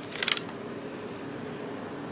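A short burst of light clicks about a quarter second in, then a steady faint hiss of background noise.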